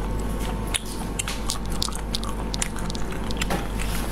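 Chewing with wet mouth clicks, picked up close by a lapel microphone, over a steady low hum.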